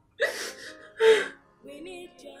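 A woman crying, with two loud, breathy gasping sobs, the second louder. Music with singing plays softly behind, coming up after the second sob.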